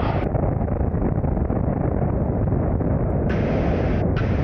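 Steady drone of the Adam A500's twin Continental TSIO-550 piston engines with rushing air, heavy in the low end, on the landing roll of a touch-and-go with power pulled back.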